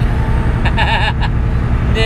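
Semi truck's Cummins ISX diesel engine heard from inside the cab at highway cruise: a steady low drone with road noise.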